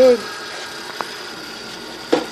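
Electric motor of a buffing wheel setup running steadily with a high whine, not under load, with a single sharp click about a second in.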